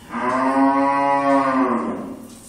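One long, low call held at a steady pitch for nearly two seconds, starting suddenly and sagging at the end.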